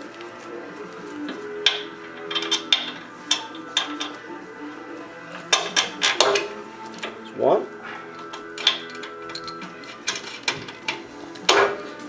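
Background music with a scattering of short metal clinks and knocks from bolts and a wrench as a coilover shock's lower mount is bolted to a lower control arm.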